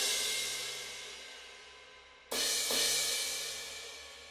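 Sampled crash cymbal from Logic Pro X's Drum Kit Designer: one crash rings out and fades, then a second strike a little over two seconds in rings and fades. The cymbal's tuning is being raised to make it higher in pitch.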